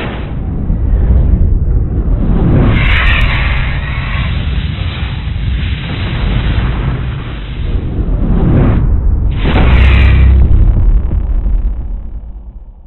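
Loud sound-effect track of an animated video intro: whooshes and deep booms over a continuous low rumble. It swells about a quarter of the way in and again near the end, then fades out.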